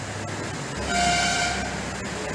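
A single short horn-like tone, lasting under a second, about a second in, over low steady background noise.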